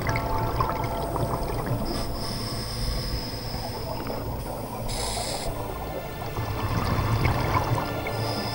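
Scuba divers' exhaled bubbles gurgling through the water, heard underwater, heavier near the start and again near the end.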